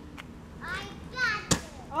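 Children's voices calling out at a distance, then a single sharp thump about one and a half seconds in.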